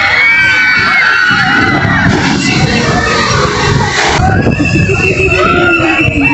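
Log-flume riders screaming and cheering as their boat runs down the drop into the water, the screams strongest in the first two seconds, with the rush and splash of water under them.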